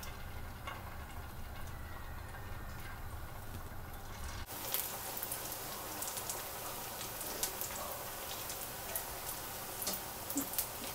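Batter-coated cauliflower florets frying in hot oil in a pan. At first there is only a faint sizzle over a low hum; about four and a half seconds in it changes abruptly to a fuller, steady sizzle with many small pops as the pan full of florets fries.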